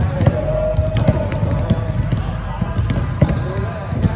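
Basketballs bouncing on a hardwood gym floor in several irregular thuds, with voices in the background.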